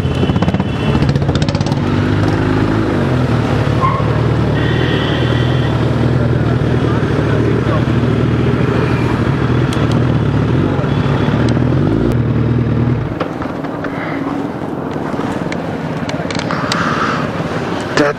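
Motorcycle engines running at low riding speed, a steady low note that changes pitch a couple of times and falls away about 13 seconds in as the bike slows to a stop.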